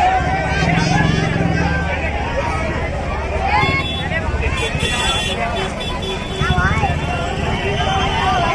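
Crowd of many voices shouting and chattering over each other, with a steady low rumble underneath.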